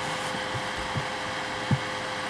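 Room tone between sentences: a steady faint hum over background hiss, with two soft low thumps, one about a second in and one near the end.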